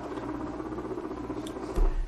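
The Ounk music software's default sound sample, a recorded animal sound, playing back steadily over the room's speakers after Run is clicked.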